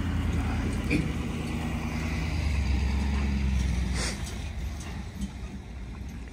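Ford pickup truck running as it tows a long flatbed trailer loaded with round hay bales past, a steady low rumble that is loudest in the middle and eases off over the last couple of seconds.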